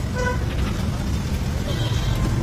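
Road traffic rumbling steadily, with a short horn toot just after the start.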